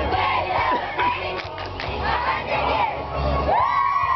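A squad of girl cheerleaders shouting a cheer together in unison, over crowd noise and music with a steady bass beat. A long, high shout comes near the end.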